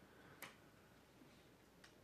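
Near silence: room tone, with two faint clicks, one about half a second in and one near the end.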